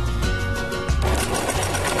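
Electric sewing machine running, stitching through fabric, with a fast rattling whir that fills out from about a second in, over background music.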